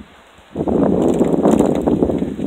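Loud rustling, rushing noise on the phone's microphone, starting about half a second in.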